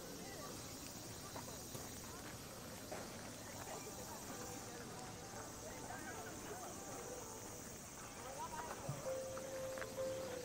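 Footsteps on a gravel plaza, with faint voices of people scattered around and a brief steady tone near the end.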